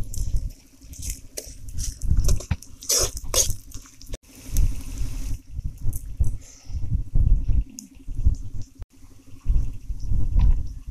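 Dried red chillies, garlic and shallots sizzling and crackling in hot oil in a black iron kadai. A metal ladle stirs and knocks against the pan in the first few seconds. An uneven low rumble runs underneath.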